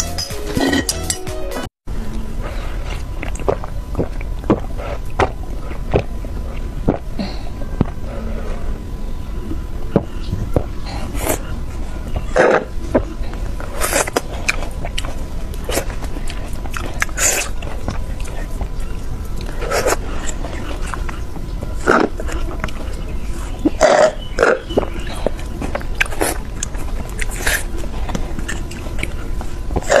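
Close-miked drinking through a straw: sipping and swallowing, with a number of louder, sharp sips scattered through, over a steady low hum.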